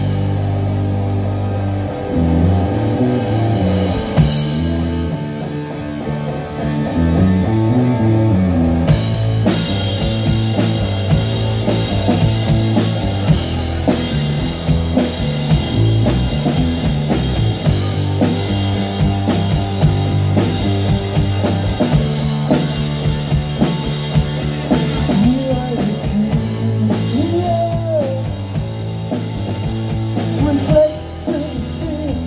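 A live punk rock band playing an instrumental passage: electric guitar and bass guitar on a riff, with the drum kit's cymbals coming in fully about nine seconds in and a steady beat after that.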